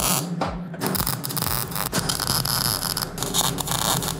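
MIG welder tack-welding a steel frame: the arc crackles and sputters in several short bursts with brief breaks between the tacks.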